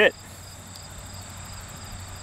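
Crickets chirring steadily in a continuous high-pitched drone.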